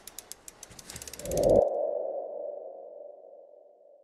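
Logo sting sound effect: a quick run of light clicks, then a mid-pitched tone that swells about a second and a half in and slowly fades away.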